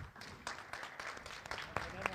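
Light, scattered applause from a small audience: many separate hand claps at an irregular pace.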